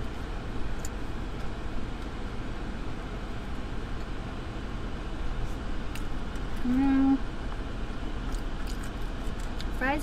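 Steady hum and rushing noise of a parked car running, heard inside the cabin. About seven seconds in, a short hummed "mmm" from someone eating.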